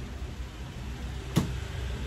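A single sharp knock about one and a half seconds in as a Morris W-50 acoustic guitar is handled and turned over, over a steady low room hum.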